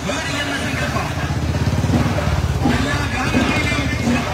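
Vehicle engine running at low speed close by, a low pulsing rumble that swells through the middle, with voices over it.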